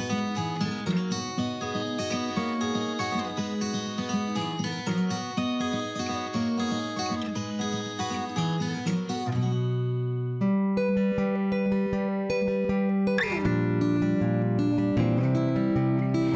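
Background music on acoustic guitar: quick, steady picked notes for most of the first ten seconds, then, after a brief break, slower held chords.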